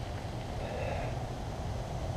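Steady low outdoor background rumble with no distinct event, swelling slightly in the middle.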